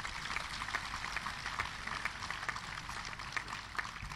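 Audience applauding: many hands clapping steadily, dying down near the end.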